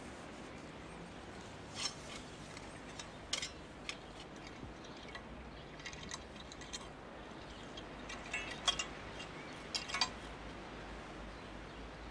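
A garden hoe working the soil: scattered short scrapes and clinks of the metal blade against earth and stones, in irregular strokes over a faint steady hiss.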